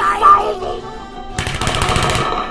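Animated cartoon soundtrack: a cartoon character's voice briefly, then about one and a half seconds in a fast, even rattle of sharp strokes that carries on to the end.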